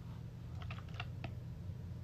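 A quick run of about six light clicks and taps in the first half, over a steady low hum.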